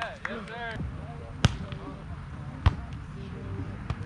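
A volleyball being played: two sharp slaps of the ball being hit by players, about a second apart, with players' shouts at the start.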